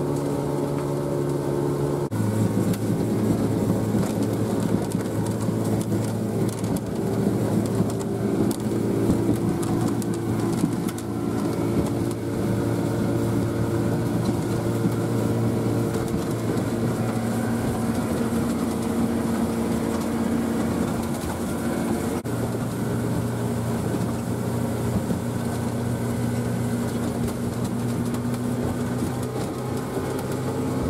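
A motorboat's engine running steadily at cruising speed, heard from inside the boat's cabin over the rush of water against the hull. The engine note shifts in pitch twice.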